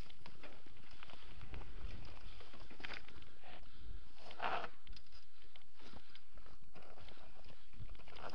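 Mountain bike rolling down a rocky forest singletrack: a steady rush of tyre and air noise with a dense, irregular clatter of knocks as the wheels hit rocks and roots and the frame and camera mount rattle. A brief louder burst comes about halfway through.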